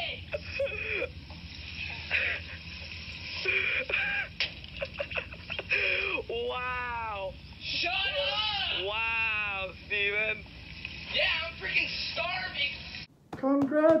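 A boy shouting and screaming in a rage, with long wailing screams in the middle, heard through a thin, band-limited recording. It cuts off suddenly near the end and a man's voice says "Congratulations!"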